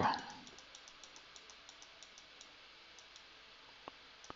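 Faint, light clicking of computer controls, small evenly spaced clicks about four a second, with one sharper click near the end.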